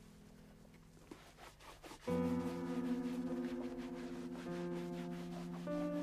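Soft film-score music: held chords swell in sharply about two seconds in and shift twice. Before that there are only faint handling sounds.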